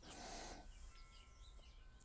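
Near silence: faint room tone, with a few faint high chirps.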